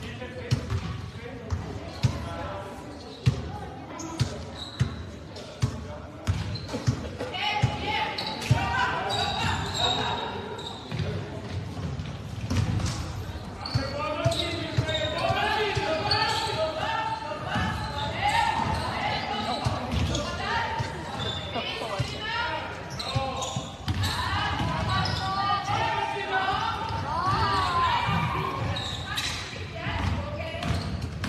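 Basketball dribbled on a wooden sports-hall floor: repeated sharp bounces that echo around the hall, most distinct in the first few seconds. From about seven seconds in, many voices of players and spectators shouting and talking rise over them.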